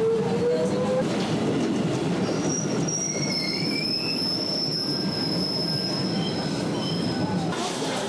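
Subway train in an underground station, running over a steady rumble: a rising motor whine in the first second as a train moves along the platform. From about two seconds in comes a high-pitched wheel and brake squeal as a train pulls in, which cuts off abruptly near the end.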